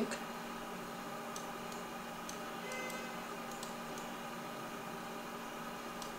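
Steady background hiss from the recording microphone, with a few faint, light computer-mouse clicks spread through it as text on screen is selected.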